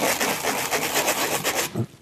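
Sawn end of a plastic pipe scraped and turned against an abrasive sponge block, a rapid, even rasping that stops near the end. It is deburring the cut edge, rounding it off and taking away the burrs left by the hacksaw.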